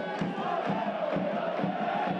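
Football crowd chanting in unison, holding a long sung note over the general crowd noise, with regular thumps about twice a second.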